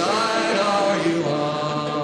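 Folk protest song with voices holding long sung notes; a low note settles in and is held from about a second in.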